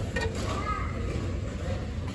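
Steady low background rumble of a busy indoor store, with faint voices talking in the distance.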